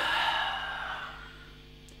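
A person's long breathy exhale, loudest at the start and fading away over about a second, over a steady low electrical hum.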